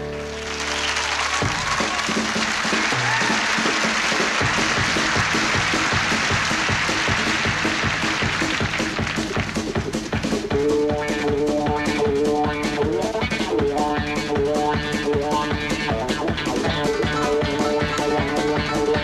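Audience applause breaking out as a live band's song ends on a held chord. About ten seconds in, the band starts playing again over it with a steady drum beat.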